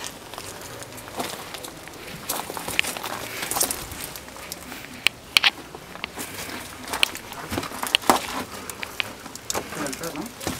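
Footsteps scuffing and crunching on a dusty, debris-strewn dirt floor, with scattered short clicks and knocks at irregular intervals.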